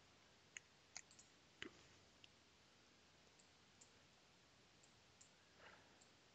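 Near silence with a few faint computer mouse clicks, four of them in the first two and a half seconds.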